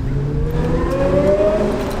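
Car engine accelerating nearby, its pitch rising steadily over a low traffic rumble.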